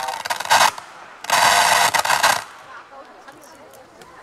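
Stage PA loudspeakers giving out two loud bursts of harsh, rasping noise instead of music, the second about a second after the first and longer, then a quiet stretch.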